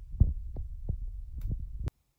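Handling noise from a hand-held camera microphone: a low rumble with several soft knocks, the loudest about a quarter of a second in, cutting off suddenly just before the end.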